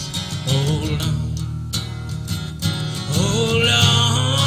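Live acoustic music: an acoustic guitar strummed steadily, with a long held melody note coming in over it about three seconds in.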